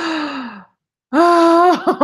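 A woman's sigh, falling in pitch and lasting about half a second, then about a second later a louder wordless vocal sound held on one steady pitch, ending in a short extra note.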